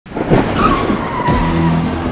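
Car tyres squealing in a skid: one high squeal that slides slightly down in pitch. About a second in a sudden hit comes in, followed by low, steady dramatic music tones.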